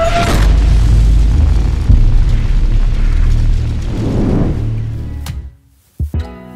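Intro music sting with a cinematic boom: a sharp hit at the start, then a deep rumble that fades out shortly before the end.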